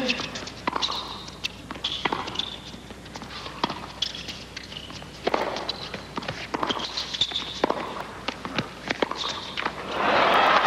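Tennis rally: racket strings striking the ball and the ball bouncing on the hard court, one sharp crack every half second to second, with short high squeaks of tennis shoes on the court between shots.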